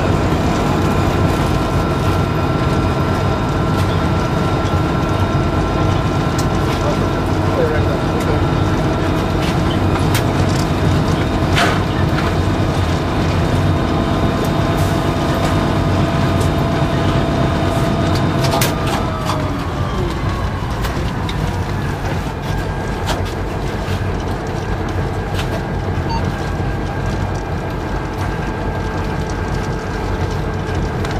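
Inside the cab of a moving EMD SD40-2 diesel locomotive: a steady engine drone with a whine, under wheel-on-rail rumble and scattered cab rattles and clicks. A little past halfway, the whine slides down in pitch and the sound eases slightly.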